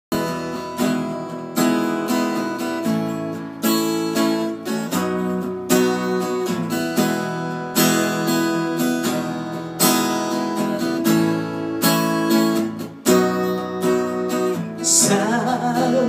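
Acoustic guitar strummed in a steady rhythm, chords ringing between the strokes, as a song's instrumental intro. A man's singing voice comes in near the end.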